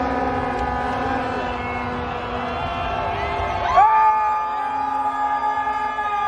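Several sirens sounding together in long held tones from an approaching motorcade of police motorcycles; about four seconds in a new siren rises quickly and then holds a steady pitch.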